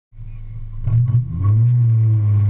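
Honda S2000's four-cylinder engine, heard from the open cockpit, cutting in abruptly, revving up about a second in, then running steadily.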